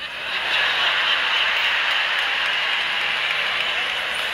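Large audience applauding, a steady wash of clapping that swells over the first half second and then holds.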